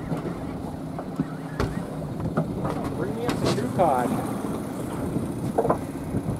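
Boat engine running at a steady low idle, with wind noise on the microphone and a couple of sharp knocks.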